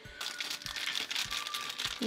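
Plastic wrapper crinkling and rustling as a small toy figure is pulled out of it, with faint music underneath.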